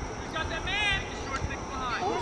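Distant shouting voices calling out across a playing field, several short high-pitched calls.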